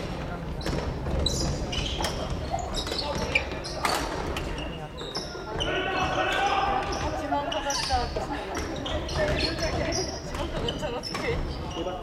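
Badminton rackets hitting shuttlecocks on several courts in a reverberant sports hall: sharp, irregular smacks throughout, with people's voices calling out in the middle of the stretch.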